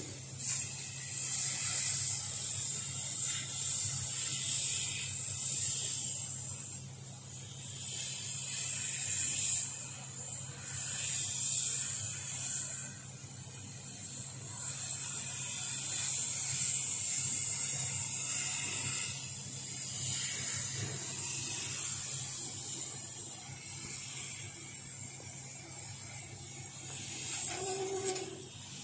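CO2 laser head cutting thin wood sheet: a high hiss of air blowing from the cutting nozzle that swells and fades as the head traces the pattern, over a low steady hum from the machine.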